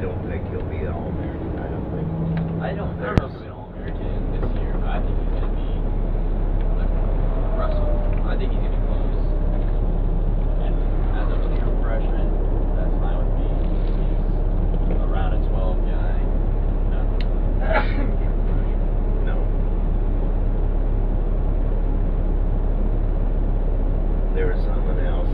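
Steady low rumble of a motor coach heard from inside the cabin, with faint voices in the background. A sharp click comes about three seconds in, and after it a steady low hum sets in and stays.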